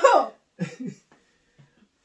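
A woman's drawn-out exclamation that falls in pitch, followed a little over half a second later by two short vocal sounds.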